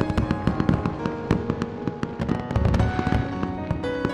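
Fireworks sound effect: rapid pops and crackles with deep booms, mixed over music.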